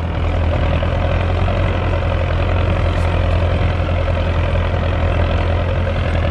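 Belarus 1025 tractor's turbocharged diesel engine running steadily under load as it drives a rotary tiller through the soil, a constant low drone with no break.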